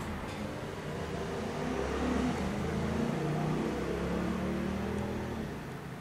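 A low vehicle engine hum that swells over the first few seconds, then fades out about five and a half seconds in.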